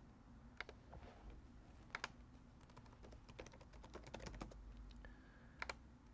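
Faint clicks and key taps on a computer keyboard and mouse: a few single clicks spread out, with a run of quick light key taps in the middle, over low room hum.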